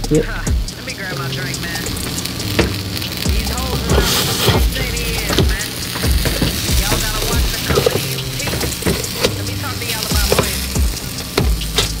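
Hip hop music with a steady bass line, over burger patties sizzling on an electric contact grill, with a few short clicks as a spatula is worked against the grill plate.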